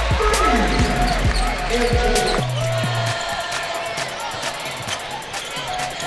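Basketball game sound on a hardwood court: a ball bouncing, with a few sharp knocks, over steady crowd noise and music from the arena.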